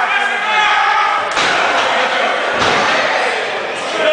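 Wrestlers' bodies hitting the canvas of a wrestling ring: two sudden thuds about a second and a half and two and a half seconds in, the second deeper, with voices shouting around them.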